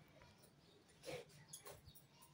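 Near silence: faint room tone, with two brief faint sounds about a second in and again half a second later.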